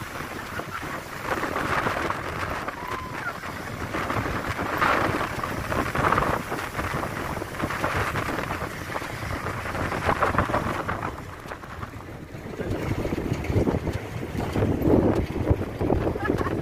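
Heavy storm surf breaking on a rock breakwater, swelling and easing in repeated surges, with strong wind buffeting the microphone.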